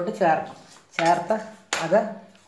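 A metal ladle clinking against a mixing bowl while dry flour is being mixed, with a couple of sharp clinks a little under a second apart.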